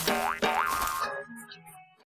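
Cartoon music with two springy boing sound effects that rise in pitch in the first second, then the music fades out.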